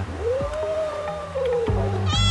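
A domestic cat's long, drawn-out yowl that rises, holds and slowly sinks in pitch, followed right at the end by the start of a shorter, higher meow.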